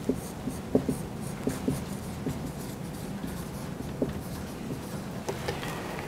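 Marker writing on a whiteboard: a run of short, separate pen strokes and small ticks as a word is written out.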